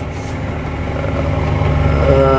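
Claas Axion 830 tractor engine running steadily, heard from inside the cab as a low drone that grows a little louder toward the end.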